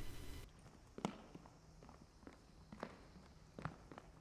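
Faint footsteps on a wooden gym floor, a few soft, irregular steps, over a low steady hum.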